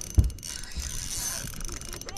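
Spinning reel being wound in under load from a hooked fish, its gears and bail making a steady fine rapid ticking whir. A short low thump comes just after the start.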